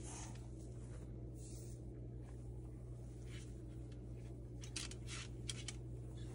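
Faint, scattered scratchy taps and rustles of a Moluccan cockatoo moving about on a shelf and nosing at a plush toy, over a steady low hum.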